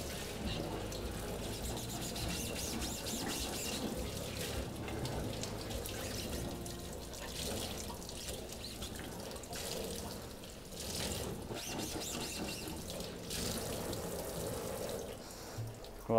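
Tap water running onto a silkscreen's mesh and splashing into a stainless steel sink as the screen is rinsed by hand to wash the paint out of it.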